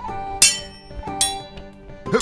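Two sword clashes about three-quarters of a second apart, each a sharp metallic clink that rings briefly, over background music.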